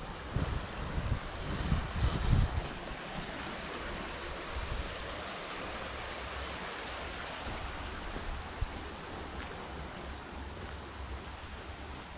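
Shallow stream running over rocks, a steady rushing of water. Gusts of wind on the microphone in the first two seconds or so.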